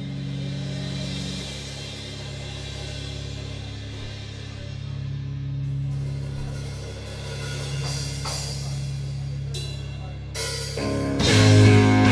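Live hardcore band opening a song: a sustained, droning guitar and bass chord rings under washing cymbals. After a few drum hits, the full band crashes in much louder near the end.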